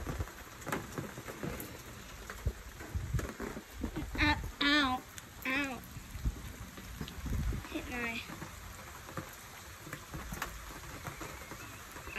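Steady rainfall in a thunderstorm, with low thumps from wind and handling on the phone's microphone.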